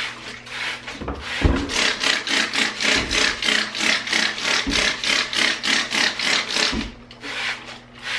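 Trigger spray bottle squirting rapidly onto the inside of a plastic hedgehog wheel, a steady run of short hissing sprays at about four a second. A few low thumps come in between.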